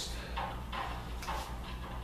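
A few soft scuffs and rustles from shoes on a tile floor and clothing as two people move through a slow hand-to-hand technique, over a steady low room hum.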